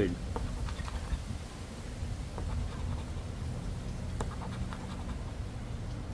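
A coin scraping the silver coating off a paper scratch-off lottery ticket, a faint scratching with scattered light ticks over a low rumble.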